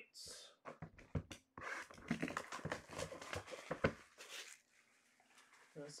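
A sealed trading-card box being cut open and unpacked by hand: shrink wrap and cardboard rustle and crackle, with sharp clicks, and foil packs are handled. It goes quiet about four and a half seconds in.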